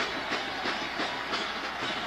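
Steady hubbub of a stadium crowd, heard through an old television broadcast, with faint irregular knocks or claps in it.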